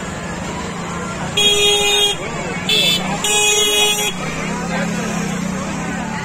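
A horn sounds three times, a longer blast, a short one, then another longer one, each a steady single note, over the constant chatter of a dense crowd.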